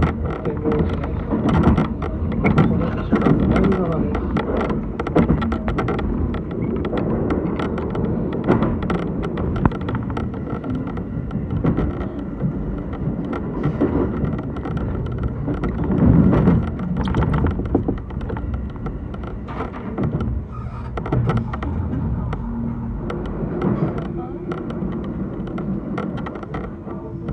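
Electric commuter train running, heard from inside the front car: a continuous rumble of wheels on rail with frequent clicks and clatter as it crosses rail joints and points, swelling about sixteen seconds in.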